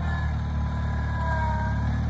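Garden tractor engine running steadily as it pulls a Brinly disc harrow through plowed soil, with faint drawn-out high tones over it.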